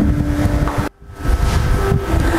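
Low rumbling handling noise as an air rifle is lifted and shifted among other rifles, with rustle on a clip-on microphone. The sound briefly drops out about a second in.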